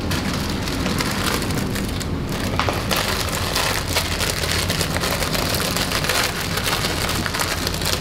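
Vegetables frying in a hot pan on the stove: a steady dense sizzle with many fine crackles, over a low steady hum.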